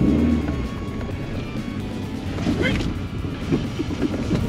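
Old Suzuki Swift's engine and running noise, heard from inside the cabin as the car drives off from the start, with background music.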